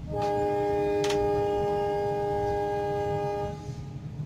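Locomotive air horn sounding one long steady chord of several notes for about three and a half seconds, over the low rumble of the moving train, with a single sharp click about a second in.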